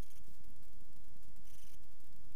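Opel Mokka rally-raid car's engine heard inside the cockpit, a low steady rumble as the car pulls away from the stage start. Two short hisses come through, one at the start and one about one and a half seconds in.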